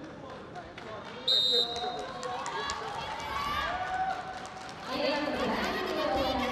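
A referee's whistle blows once, briefly, about a second in, starting the wrestling period. Voices of coaches and spectators call out around it.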